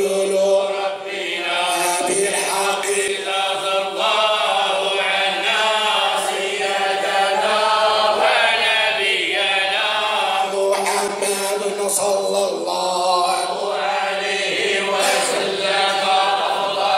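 A group of men chanting a Sufi devotional litany (dhikr) in unison, with long held notes over a steady low sustained note.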